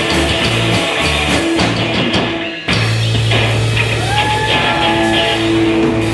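Live rockabilly trio playing: electric guitar, upright bass and drum kit. The band cuts off for a moment about two and a half seconds in, then comes back in with a long held low note under sliding guitar notes.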